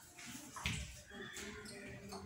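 A soft thump about half a second in, followed by quieter rustling: a child moving on a tiled floor, getting up from his knees.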